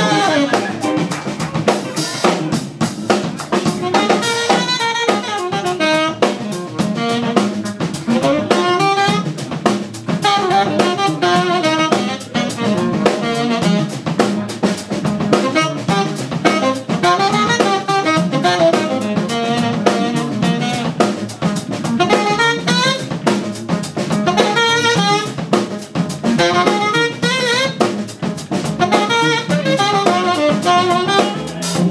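Live jazz band playing an instrumental, with a horn playing a melodic solo line that wavers in pitch over a drum kit, electric bass, organ and electric guitar.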